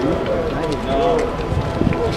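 Indistinct voices of several people talking at once, over a steady background murmur, with a brief low thud near the end.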